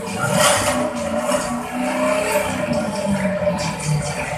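Recorded race-car engine revving, played loudly through the hall's sound system as part of the dance track.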